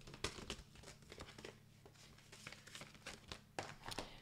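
Faint crinkling and clicking of plastic and paper packaging being handled, as die packets in clear plastic sleeves are turned over in the hands, with a few sharper clicks among the rustling.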